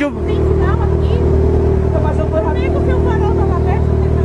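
Motor vehicle engine idling in stopped street traffic: a steady low rumble with a constant hum. Faint voices talk over it.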